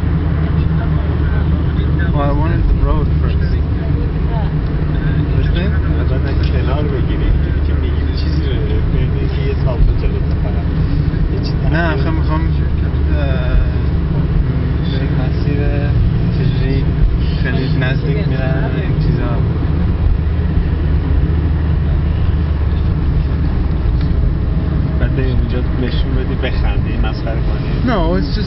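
Interior cabin noise of a car driving on a highway: a loud, steady low rumble of engine and tyres, with voices talking at times.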